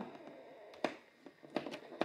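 Fingers pressing and picking at a perforated cardboard door on an advent calendar box, giving a few quiet, sharp taps and clicks.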